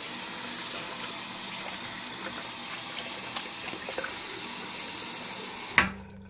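Tap water running steadily into a sink or tub drain, cutting off abruptly near the end with a short knock.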